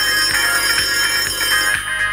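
Electronic music with a steady beat, with a high, steady telephone ring over it that stops shortly before the end.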